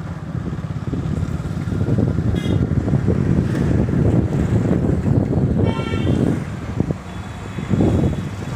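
Street traffic heard from a moving bicycle, with wind rumbling on the microphone. A vehicle horn toots briefly twice, about two and a half seconds in and again near six seconds.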